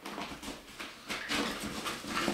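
A dog making noise in the background.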